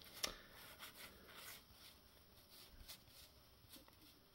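Faint handling of baseball trading cards: a few soft ticks and rustles as cards are flipped through a stack by hand, the clearest just after the start.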